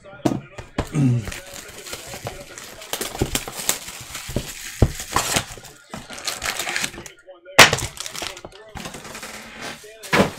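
Plastic shrink-wrap being torn off a cardboard trading-card box and the foil packs pulled out, a long run of crinkling and rustling with small clicks. A single sharp knock about three-quarters of the way through is the loudest sound.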